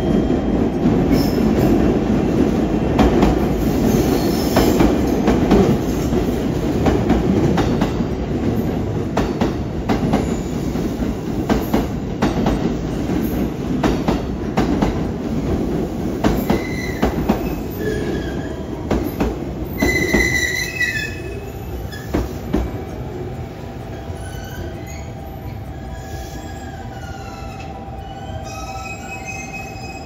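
JR Kyushu 787 series electric train rolling into the platform over points, its wheels clacking across rail joints. From about halfway in it slows, with high wheel and brake squeals gliding up and down, and the rolling noise dies to a steady hum as it draws to a stop.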